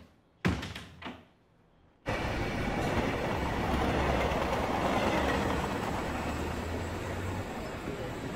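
A door bangs shut, followed by a second, softer knock. About two seconds in, the steady noise of a train at a railway station starts abruptly and runs on, with a low hum underneath that stops shortly before the end.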